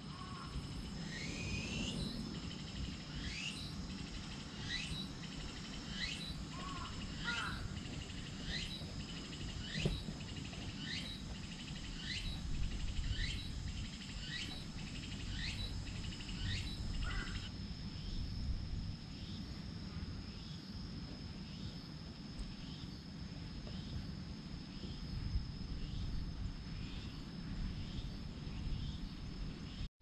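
A bird repeating a short call that falls in pitch, a little more than once a second, clearly for about the first half and fainter after. Under it runs a steady high insect drone and a low outdoor rumble.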